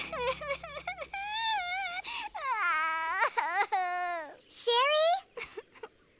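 A young female cartoon voice crying: long wavering wails that slide up and down in pitch, broken by short sobbing gasps, fading out near the end.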